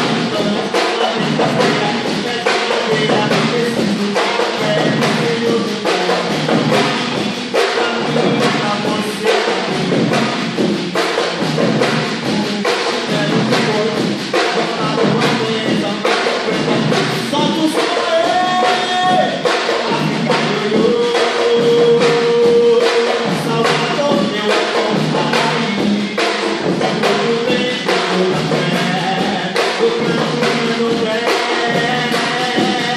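Live percussion ensemble of bass drums on stands, snares and a drum kit playing a steady, driving groove, with a man singing into a microphone over it.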